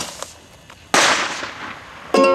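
Bottle rocket launching from a plastic bottle with a short hiss, then about a second later a loud bang that dies away over the next second.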